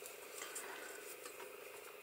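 Faint handling sounds of yarn being wound over the fingers and drawn through with a 2 mm crochet hook to start a magic ring, over a quiet, steady room tone.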